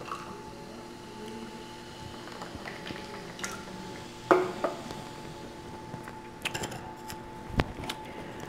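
Scattered clicks and knocks of tableware at a meal table, the loudest about four seconds in and another near the end, with a small cluster of light clicks between them. A faint steady hum runs underneath.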